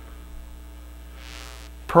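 Steady low electrical mains hum through the sound recording, with a brief soft breath sound shortly before the end.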